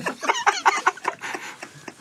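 A man laughing in quick, high-pitched cackles that trail off.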